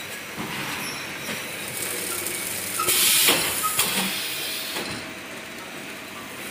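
Automatic L-sealer shrink wrapping machine running, with a steady mechanical clatter and a few sharp clicks. A short, loud hiss comes about three seconds in.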